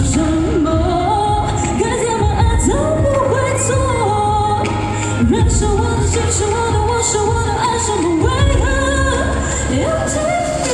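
A woman singing a pop song live into a microphone, backed by a band with a steady beat.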